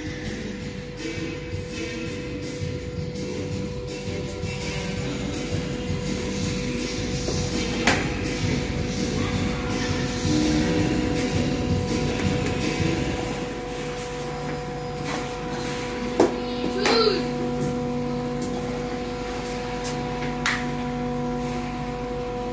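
Ice hockey stick tapping and striking a puck on rubber floor matting, with a few sharp knocks, over steady background music.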